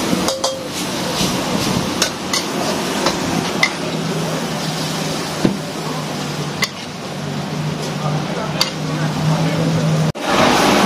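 A metal wok spatula scraping and clanking against a steel wok, a sharp clack every second or so, over a steady frying hiss as a stir-fry is finished and scooped out of the wok. A low steady hum sits underneath from about halfway through.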